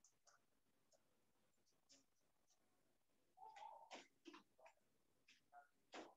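Near silence: room tone with a few faint, short sounds, most of them bunched together a little past the middle.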